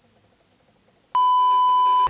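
A near-silent pause, then a loud, steady bleep tone edited in about halfway through and held for about a second, of the kind used to censor a word.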